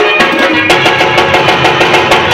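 Live Afghan folk music for the attan dance. A fast, steady hand-drum rhythm on tabla/dholak, about four strokes a second, runs under a sustained electronic keyboard melody.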